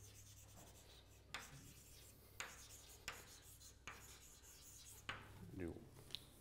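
Chalk writing on a blackboard: a handful of short, faint scratches and taps as letters are written.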